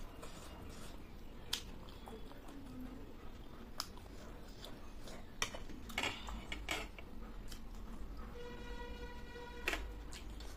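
Metal spoon and fork clinking and scraping on a ceramic plate, a handful of separate sharp clicks as food is cut and scooped. Near the end comes a steady high tone lasting about a second.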